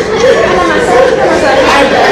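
Speech only: a person talking loudly and without pause.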